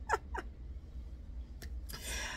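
A woman laughing: a few short pulses of laughter that die away about half a second in, one more faint pulse later and an intake of breath near the end, over a steady low hum.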